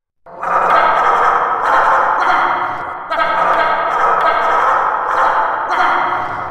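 Sound effect of a pack of dogs barking together in a loud, dense cacophony of overlapping barks, starting a moment in and running on past the end.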